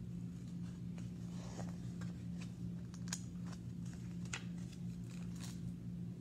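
Paper rustling with a few faint crackles as a picture book's page is turned and handled, over a steady low hum.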